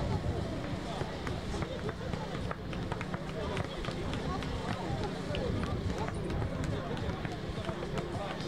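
Indistinct voices of people around an outdoor court talking over a steady low rumble, with scattered light clicks and taps.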